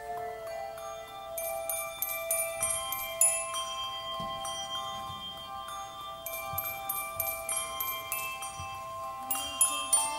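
Handbell ensemble playing: brass handbells rung one after another, each note ringing on and overlapping the next in a slow melody.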